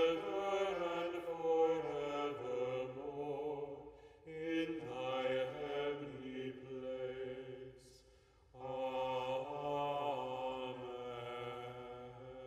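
Voices singing a slow chant in three long phrases, with a brief pause between each.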